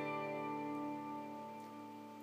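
Electric guitar chord ringing out after being strummed, its notes sustaining and slowly fading.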